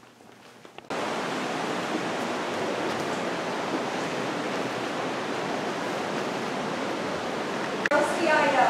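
A steady, even rushing noise that starts abruptly about a second in and holds unchanged until just before the end.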